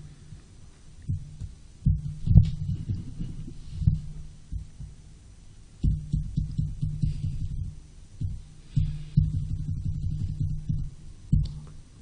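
Low, muffled thumps and knocks with a steady low hum, picked up by a desk microphone as hands work a laptop on the table.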